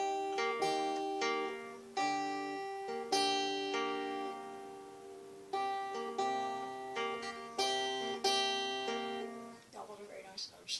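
Acoustic guitar played finger-style: a slow finger-picked pattern of single notes and chords left to ring. One chord is held and left to fade midway, and the playing stops shortly before the end.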